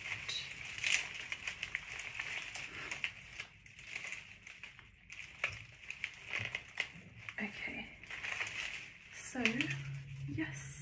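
Dried flower stems and foliage crinkling and crackling, with many small irregular clicks, as twine is wrapped and tied around the bouquet's stems.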